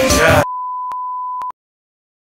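Hip-hop beat cutting off abruptly about half a second in, followed by a steady, high electronic beep lasting about a second, with two or three faint clicks in it, which then stops sharply.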